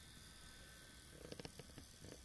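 Near silence: room tone, with a few faint ticks in the second half.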